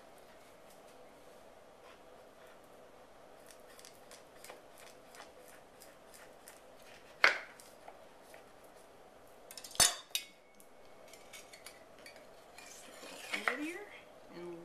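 A kitchen knife cutting wedges through a fruit tart, with faint crunches of the crust. Two sharp clinks come about seven and ten seconds in as the blade strikes the dish beneath; the second rings briefly.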